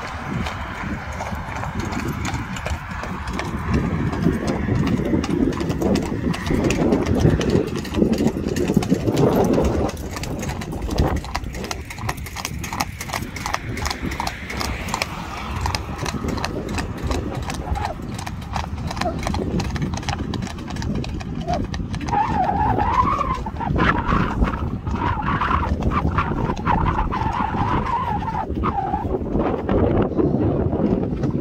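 Hooves of a Friesian horse clip-clopping steadily on an asphalt road as it pulls a driving carriage, over a steady low rumble of road and wind noise.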